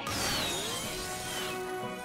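Cartoon background music with a sound effect that comes in suddenly: a whistling tone falling in pitch over about a second and a half.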